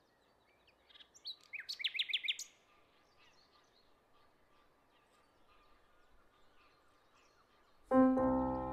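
A songbird sings a short burst of quick, rapid chirps lasting about a second and a half, followed by faint scattered chirps. A piano comes in sharply right at the end.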